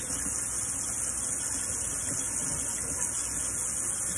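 Tap water running steadily from a kitchen faucet into a stainless steel sink, splashing over hands being rubbed under the stream.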